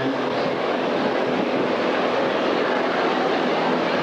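A large crowd of students in a gymnasium cheering and clapping, a steady loud din with no single voice standing out.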